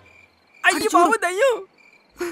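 A man's wavering, wailing cry of about a second, its pitch swooping up and down, over the steady chirping of crickets.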